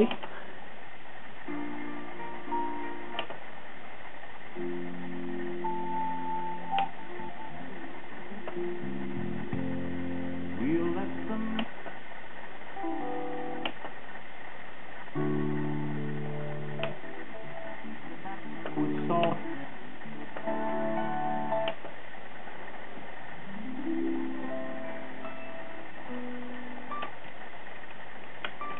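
Music playing back from a Realistic CD-1600 compact disc player through stereo speakers, picked up in a small room: a slow piece of held chords with short gaps between them. The disc is playing and tracking without skipping.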